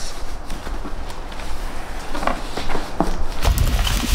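Cardboard shipping carton being handled and pulled open: rustling and scraping of cardboard with a few short knocks. Low bumps near the end as the inner box is lifted out.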